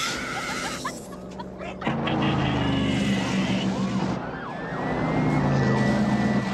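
A car engine running hard at speed, with a man's wild scream at the start and a siren wail rising and holding near the end.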